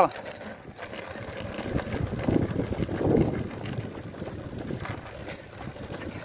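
Faint, indistinct voices over steady outdoor background noise, most noticeable around two to three seconds in.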